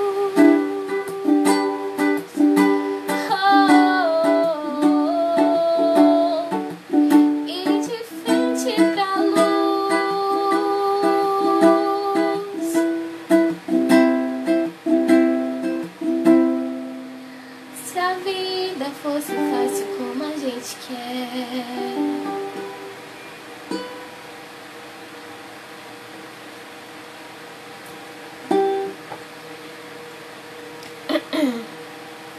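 Acoustic ukulele strummed with a woman's voice singing along; the song ends about two-thirds of the way in, leaving quiet room sound with one brief sound near the end.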